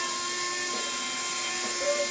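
Robart electric retract on a giant-scale Corsair's landing gear: its small electric motor and gearbox whine steadily as the gear strut and wheel swing through their travel.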